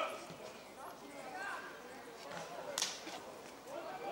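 Scattered shouts and calls from people at a football match, with one sharp crack about three-quarters of the way through.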